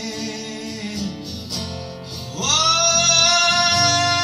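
Live acoustic guitar played under a male voice singing; about two and a half seconds in, the voice slides up into a long held note over the guitar.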